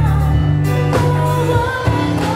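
Live reggae band playing, with a woman singing lead over a strong bass line and guitars.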